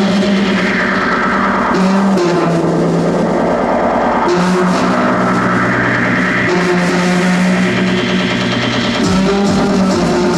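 Live industrial electro-punk music: an acoustic drum kit with cymbals played over a keyboard synthesizer's held bass notes that change pitch every second or two.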